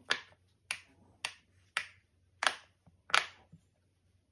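Bubbles of a large silicone pop-it fidget toy pressed in one by one with a finger, giving six sharp pops in a row, each about two-thirds of a second after the last.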